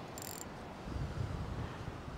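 Beach ambience: a steady wash of surf, with a low, gusty wind rumble on the microphone in the second half.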